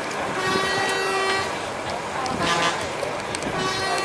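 A vehicle horn sounding in several blasts: a long one near the start, a short one past the middle and another near the end, over the chatter of people.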